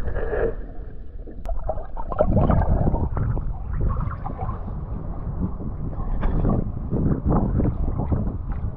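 Seawater sloshing and splashing right at the microphone as it moves in and out of the water, with irregular splashes over a steady rumble. The first second and a half is muffled, as if heard underwater.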